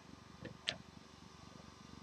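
Faint handling noise, a low rumble with a small tick and then a sharper click a little under a second in, from a webcam held in the hand.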